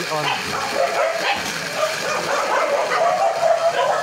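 Electric water pump motor running steadily, started automatically by its newly fitted pressure controller because a tap is open. A dog's calls sound over it.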